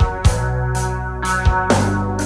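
Instrumental intro of a post-grunge rock song, with no singing. A drum kit plays paired bass-drum kicks and a cymbal struck about twice a second, over sustained held chords.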